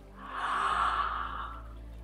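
A woman's single deep, audible breath, lasting about a second, taken in a pause between spoken affirmations.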